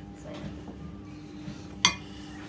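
A single sharp clink of kitchenware, such as a utensil or grater knocking a plate or the metal baking tray, near the end, with a brief ring.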